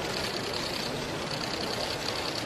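Steady background noise of a large hall, an even hiss-like hum of the crowd and room with no clear voices or clicks.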